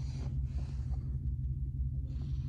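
Mustang GT's 4.6-litre two-valve V8 idling steadily, a low pulsing rumble heard from inside the cabin. A short hiss sounds near the start.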